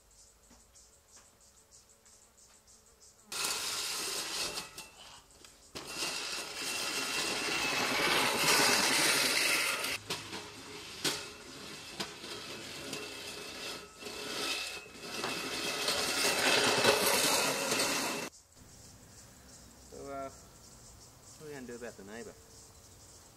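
Walk-behind lawn mower's motor running, starting abruptly a few seconds in, dipping briefly soon after, and cutting off suddenly about four seconds before the end.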